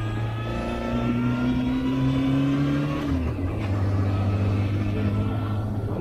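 A Honda motorcycle's engine running on the move, heard from the rider's seat. Its revs rise slowly for about three seconds, then drop and settle into a steady pull.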